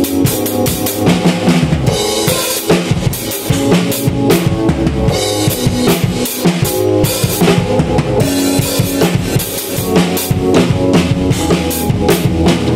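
Live jam of a Pearl drum kit and a keyboard: a steady, busy drum groove of kick, snare and cymbal hits throughout, over sustained keyboard chords.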